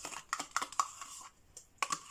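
A quick run of light clicks and taps from hands and kitchen things handled at a plastic mixing bowl of cake batter. The clicks cluster in the first second, and two more come near the end.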